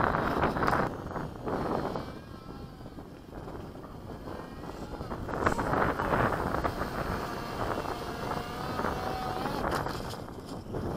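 Wind buffeting the microphone in gusts, with the faint whine of a small drone's motors drifting in pitch underneath.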